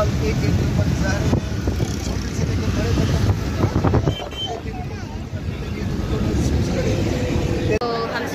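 Vehicle engine and road rumble heard from inside the vehicle, with voices over it; the rumble eases about halfway through.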